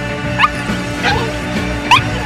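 Small Yorkshire terriers yipping during rough play, three short rising yelps, over background music.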